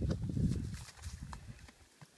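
Footsteps crunching on a dirt trail, with irregular low rumbling thuds that are loudest in the first second and fade toward the end.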